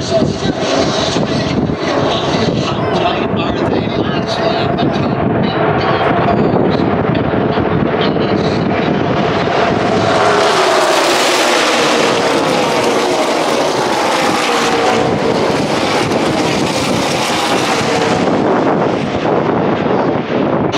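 Pack of NASCAR Xfinity stock cars with V8 engines passing the grandstand at racing speed from about halfway through, a loud engine noise whose pitch sweeps down as the cars go by. Before they arrive, crowd voices and distant engine noise.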